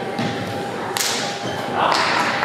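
A wushu longfist routine on a competition carpet: a sharp, whip-like snap about a second in, from a strike or a slap, with dull thuds of footwork.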